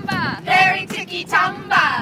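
Girls and women singing loudly in high voices, in short phrases with sliding notes.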